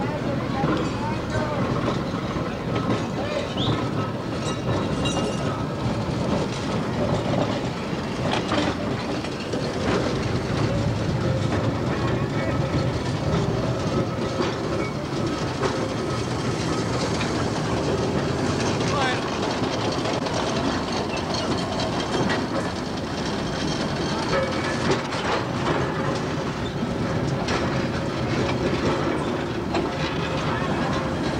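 Electric interurban railcar of the Hershey Electric Railway running along the track: a steady rumble of wheels on rail with occasional clicks.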